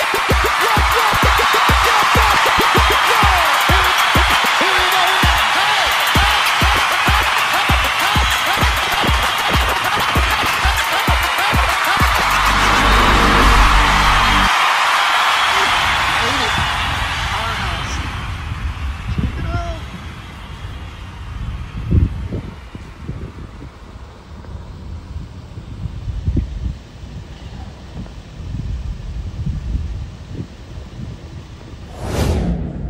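Club dance music with a steady kick drum at about two beats a second under crowd noise, swelling in the bass and then cutting off sharply about halfway through. After that, quieter outdoor background noise with a few knocks and bumps.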